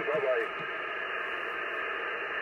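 Shortwave receiver hiss: 15 m band noise through an Icom IC-740 HF transceiver's narrow single-sideband filter. A faint, garbled voice from another station sits under the noise in the first half second.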